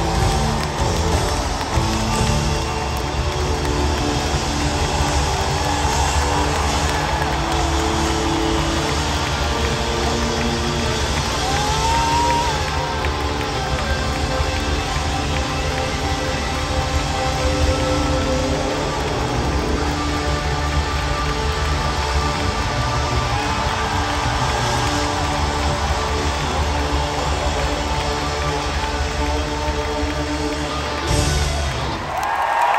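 Live rock band playing an instrumental passage, with an electric guitar lead bending notes over bass and drums, heard from the audience in an arena.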